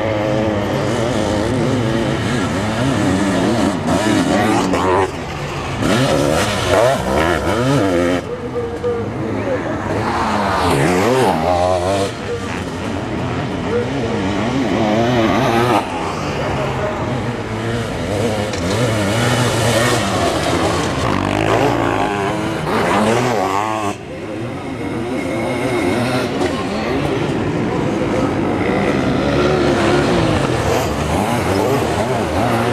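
Sidecar motocross outfits racing past on a dirt track, their engines revving hard and rising and falling in pitch as they accelerate out of and back off into corners, one outfit after another. The sound jumps abruptly several times where the shots change.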